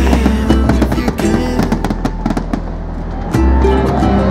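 Background music playing, with aerial fireworks popping and crackling over it.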